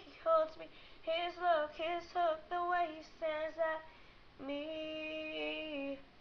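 A woman singing unaccompanied, a run of quick sung phrases, then one long held note for the last second and a half.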